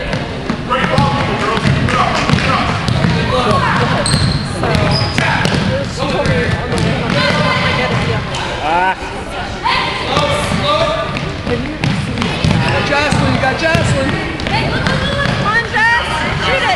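Voices calling and shouting across a gym during a basketball game, with a basketball bouncing on the hardwood floor.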